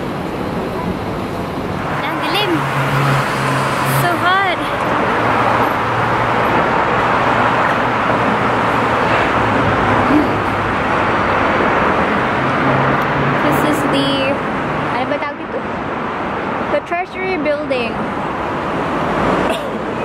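City road traffic: cars passing with a low engine hum and tyre noise that builds and then dies away after about fifteen seconds.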